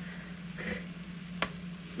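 Cubed muskrat meat frying in sauce in a cast-iron skillet, a faint steady sizzle over a low hum, with one sharp click about one and a half seconds in.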